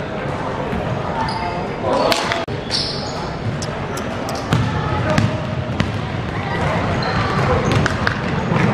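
Basketball game sounds in a large gym: the ball bouncing on the wooden court, short high sneaker squeaks, and players' and spectators' voices calling out.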